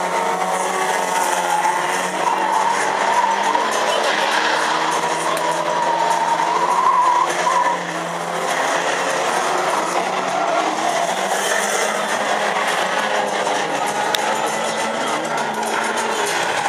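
Several banger race cars' engines running and revving together on the track, with a haze of tyre and track noise; one engine's pitch climbs about six to seven seconds in before the sound dips briefly.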